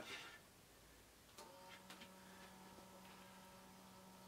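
A small 3 RPM geared motor is plugged in with a click about a second and a half in, then hums faintly and steadily as it starts turning the spindle of vinyl records.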